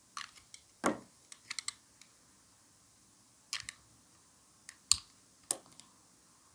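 A knife blade cutting through a dry bar of soap, giving crisp, irregular cracks and clicks as slivers break away; the loudest cracks come just under a second in and about five seconds in.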